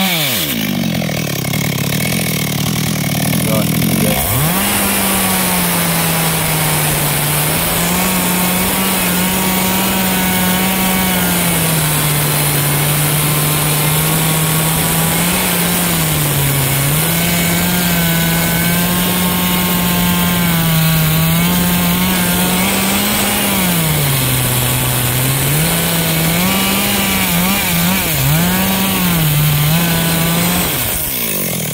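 GZ4350 two-stroke petrol chainsaw running under load as it cuts into the base of a large eucalyptus trunk. Its engine note dips and recovers several times as the chain bites, with a sharp drop about four seconds in.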